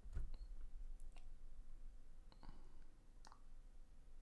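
A few faint, scattered clicks and taps, about half a dozen spread unevenly, with a low thump right at the start.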